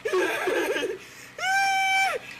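A person crying out in distress: a broken, sobbing cry, then a long, high, held wail near the end.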